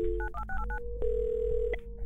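Telephone dial tone, quickly followed by a run of short touch-tone keypad beeps dialing a number, then a single steady tone held almost to the end.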